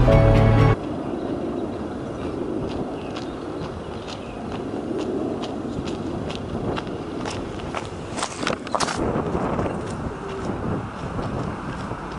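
Background music cuts off under a second in. Then come footsteps crunching on a wet gravel and mud track over a steady low rush, growing louder and loudest about eight to nine seconds in.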